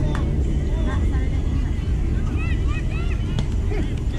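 Wind rumbling steadily on the microphone, with faint distant shouts from players and spectators around the ball field and a single short knock near the end.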